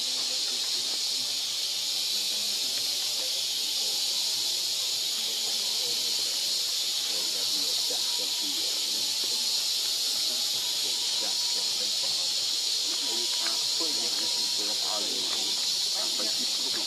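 Steady, high-pitched drone of a forest insect chorus, an even hiss with a few held high tones.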